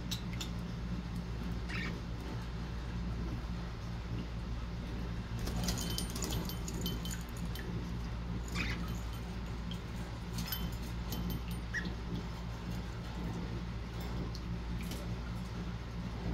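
Budgerigar bathing in a clip-on plastic cage bath: scattered bursts of splashing and wing-flapping in the water, the busiest about six and eleven seconds in, over a steady low hum.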